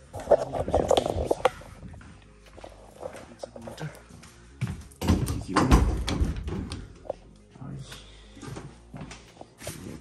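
Handling noise from a camera being picked up and moved over a wooden desk: clusters of knocks and rubbing about half a second in and again about five seconds in, with scattered ticks between.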